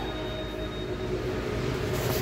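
Restaurant dining-room background noise: a steady low rumble with faint music playing over the speakers.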